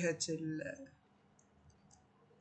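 A man's voice says one word in Arabic, then a pause holding a few faint, short clicks.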